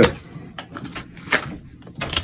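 Knife blade slicing into a wooden spoon blank during hand carving: a few short, sharp cutting strokes, the loudest a little past halfway.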